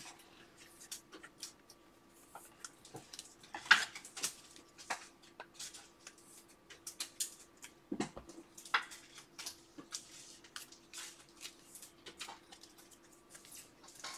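Faint, scattered clicks and plastic rustles of trading cards and clear card holders being handled, the sharpest clicks about four and eight seconds in, over a faint steady hum.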